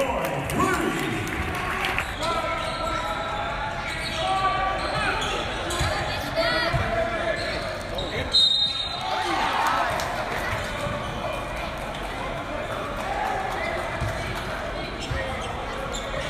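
A basketball bouncing on a hardwood court during live play in a large gymnasium, with spectators talking over the general hall noise.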